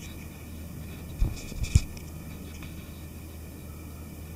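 Handling noise: two short, soft thumps about half a second apart, over a steady low room hum.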